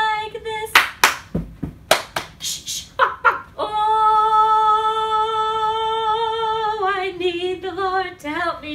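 A woman singing an unaccompanied action song. About one to two seconds in comes a quick run of percussive sounds (claps, shushes and a stomp), then she holds one long steady note for about three seconds and ends on a falling phrase.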